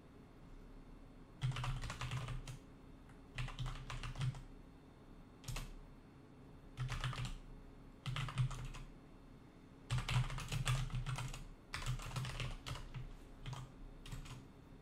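Typing on a computer keyboard: bursts of rapid keystrokes, starting about a second and a half in, separated by short pauses, over a faint steady hum.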